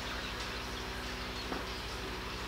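Steady room noise: a low electrical hum with even hiss, and one faint tick about halfway through.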